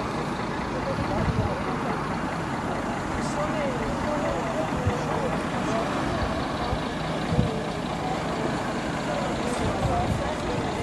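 Bus diesel engine idling steadily, with people's voices chattering in the background.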